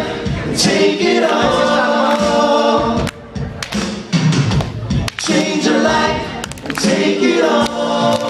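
Several male voices singing a pop song live into microphones, in layered harmony, with short breaks in the singing about three and five seconds in.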